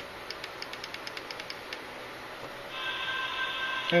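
A rapid run of faint clicks for about a second and a half. Then, near three seconds in, a greeting-card sound module starts a held chord of steady tones through its tiny speaker, set off by its lever switch as the box lid opens.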